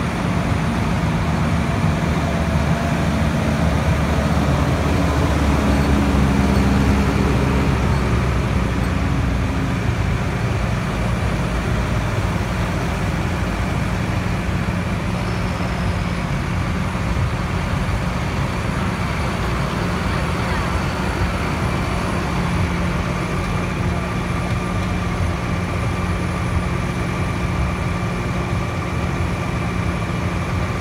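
Diesel engines of John Deere tractors and a forage harvester running as the machines drive past on grass. The engine sound is loudest in the first several seconds, then settles to a steady hum.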